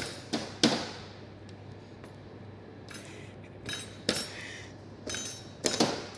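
Kitchen knives chopping dried jackfruit seed pieces on plastic cutting boards: irregular sharp knocks, three quick ones at the start, a pause of about two seconds, then more spaced knocks with a quick pair near the end.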